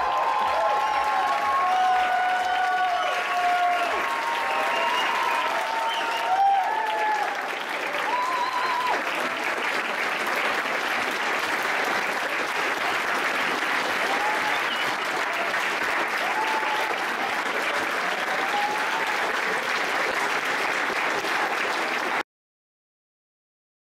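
Music trails off over the first few seconds, then an audience applauds steadily, with a few shouted cheers.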